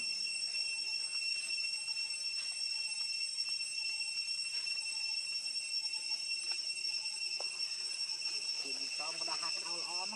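Steady, high-pitched drone of an insect chorus, holding a constant pitch. Near the end a short, wavering pitched call rises over it.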